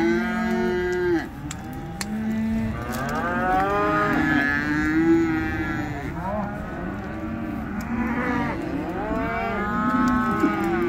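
Several cattle mooing, their long calls overlapping one another almost without a break.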